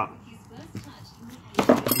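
Faint handling noises, then a brief, sharp clinking clatter of hard objects about one and a half seconds in.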